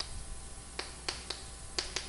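Chalk tapping and clicking against a chalkboard as words are written: about six short, sharp ticks spread over two seconds.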